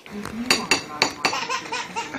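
A metal spoon clinking against a ceramic bowl, several sharp clinks in quick succession, with laughter around them.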